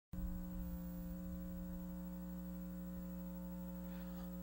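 Steady electrical mains hum on the audio feed: a constant buzz of fixed tones that does not change.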